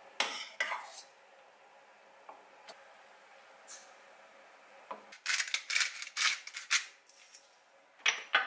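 A metal spoon scraping and clinking against a stainless steel saucepan as boiled gnocchi are scooped out, two short bursts at the start. About five seconds in comes a quick run of sharp kitchen clatters.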